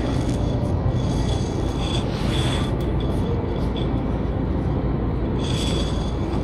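Steady low hum of a store interior's background noise, with two brief rustles, about two seconds in and near the end, as a potted plant's leaves and pot are handled.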